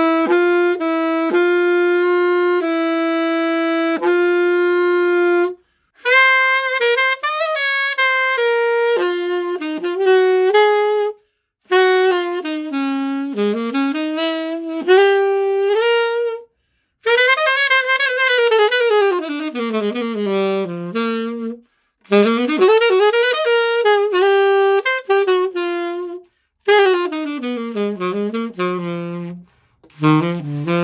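Inexpensive Glory alto saxophone with its stock mouthpiece, played solo. A few short repeated notes and one long held note open the passage, then come five quick phrases of runs up and down the range, each ending in a short breath.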